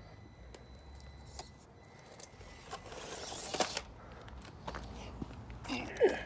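Small electric RC crawler truck creeping over grit and leaves at a curb: a faint steady motor whine with scattered clicks and scrapes from the tyres, and a louder scrape about halfway through.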